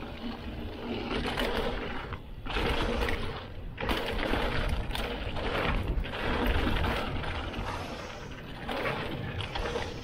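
Mountain bike riding down a rough dirt trail: tyres running over loose dirt and the bike rattling and knocking over bumps, with rumbling wind noise on the body-mounted microphone. The loudness surges and dips with the terrain.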